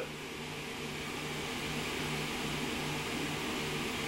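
Steady background hiss with a faint low hum, slowly getting a little louder.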